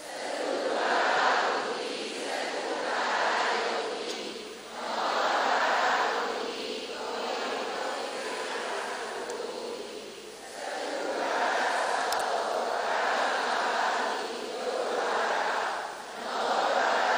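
A group of people reciting together in unison, many voices blurred into a muffled, noisy sound that swells and falls in phrases every couple of seconds.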